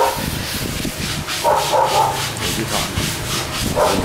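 Sandpaper rubbing back and forth on wood in quick, even strokes, about four a second. A dog makes a short call about one and a half seconds in.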